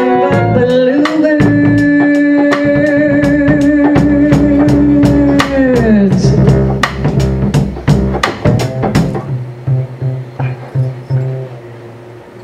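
Live jazz: a female singer holds one long note for about five seconds over upright double bass and drums, then lets it slide down and end. Bass and drum strokes carry on more softly, dropping in level near the end.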